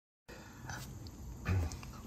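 Quiet room tone that begins after a moment of dead silence, with one brief low sound about a second and a half in.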